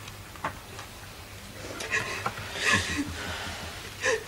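Soft rustling of paper slips being handled, with a few small clicks and one louder rustle near the end.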